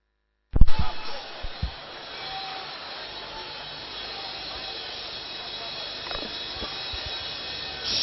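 A congregation praying aloud all at once, heard as an even wash of many voices with soft background music. It starts abruptly after half a second of silence, with a few loud low thumps in the first second or so.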